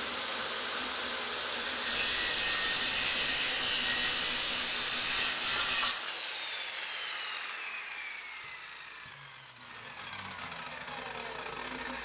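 Skilsaw corded circular saw running at speed with a steady high whine, then cutting across a 2x4, louder and rougher for about four seconds from about two seconds in. Once the cut ends the motor is switched off and the blade coasts down, its whine falling steadily in pitch until it nearly stops.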